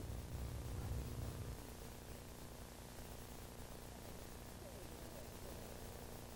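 Dead air on a broadcast: a faint, steady electrical hum with hiss, a little stronger with a low rumble in the first second and a half.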